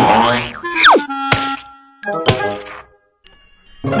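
Cartoon sound effects over children's music: a quick falling whistle, then a sharp boing-like thunk about a second in and a second impact about a second later, the sound of a cartoon character falling and crashing. The music drops out briefly and comes back near the end.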